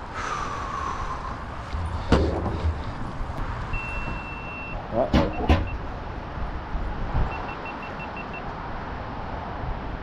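Electronic beeping, one beep about a second long and then runs of short quick beeps, over a steady wind-like noise, with a sharp click about two seconds in and two more clicks about five seconds in.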